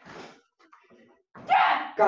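Sharp, forceful exhalations from a karateka timed with fast, strong strikes: a short breathy puff at the start, then a louder voiced shout-like burst about a second and a half in.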